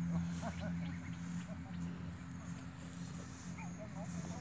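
An engine running steadily with a low hum, with a few short animal calls near the start.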